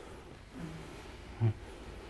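Quiet room tone, with one short low thump about a second and a half in.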